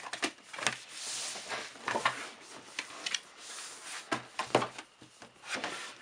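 Cardboard box being opened and handled: an end flap pulled open and the packing slid out, with scraping rustles of cardboard and several light knocks.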